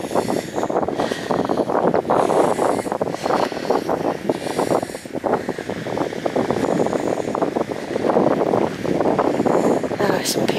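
Wind buffeting the camera microphone: a steady rushing noise with short gusts, easing briefly about halfway through and rising again near the end.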